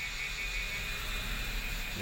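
Steady low hum and hiss of a vehicle's cabin, with faint steady high-pitched tones above it.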